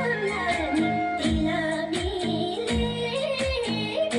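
A singer performing a Nepali song with a live band: the sung melody wavers over a keyboard and bass line, with drums keeping a steady beat of about two hits a second.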